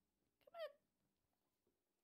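A single brief high-pitched call about half a second in, falling in pitch, after a faint click; otherwise near silence.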